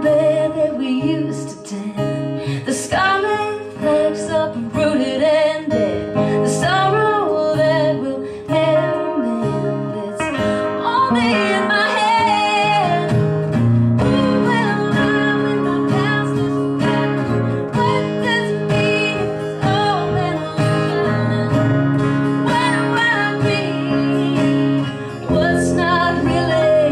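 A song played live on acoustic guitar, steady strummed chords with a sliding melody line over them.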